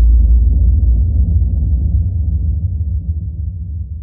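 A deep, rumbling boom from a logo sting that hits sharply and then slowly fades away.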